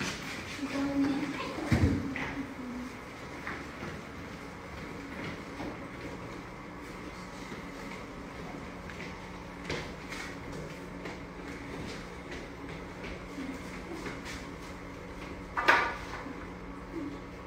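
Faint voices and movement in a large room over a low steady hum, with some louder speech-like sound early on. A short, louder sound comes just before the end.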